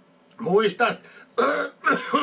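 A man clearing his throat and making short vocal noises, in three brief bursts with pauses between.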